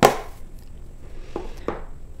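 A sharp knock as an object is set down on a wooden tabletop, followed by faint handling noise and two light taps.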